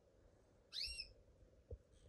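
A canary gives a single short whistled call note about a second in, arching up and then down in pitch. A faint soft knock follows near the end.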